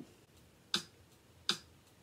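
Two sharp clicks about three-quarters of a second apart, a steady count-off beat just before playing begins on a xylophone.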